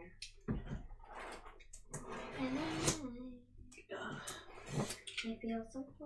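Low murmured voices with soft rustling and handling noise, as a cardboard snack box is picked up.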